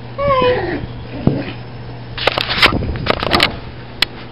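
A dog's high whine, falling in pitch, just after the start, followed about two seconds later by a run of short rough noisy sounds.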